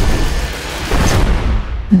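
Fighter jet roar from a film sound mix: a loud rushing noise over a deep rumble, swelling again about a second in.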